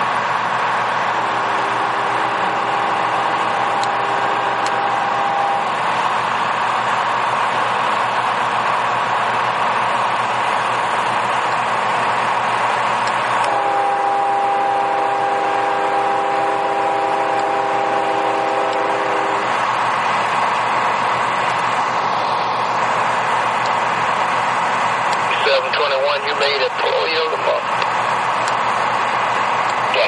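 Railroad maintenance-of-way diesel machines running steadily, while a multi-chime air horn sounds twice: a blast of about five seconds near the start and a louder blast of about six seconds midway. A voice comes over a radio scanner near the end.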